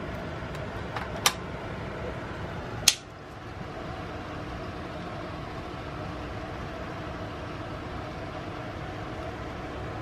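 Steady, even background hum, like a fan or room ventilation running, with two sharp clicks about one and three seconds in.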